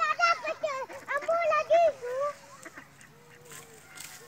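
Domestic ducks quacking: a run of loud calls in the first two seconds or so, then quieter.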